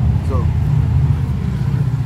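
A loud, steady low rumble, the loudest sound throughout, with a man saying one short word near the start.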